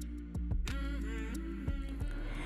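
Soft background music: sustained tones under a slow melody line.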